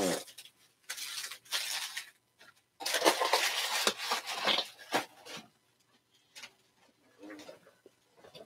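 Rustling and scraping of trading cards and their packaging being handled: a few short bursts, then a longer one of about two and a half seconds starting about three seconds in.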